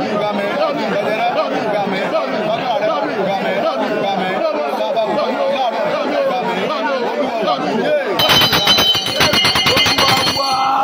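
Many voices praying aloud at once, overlapping and unbroken. A bell rings rapidly and loudly for about two seconds near the end.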